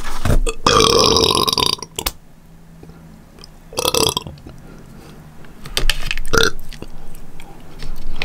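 A woman burping: one long, loud burp about a second in, then a shorter burp around the middle and another short one a little after six seconds.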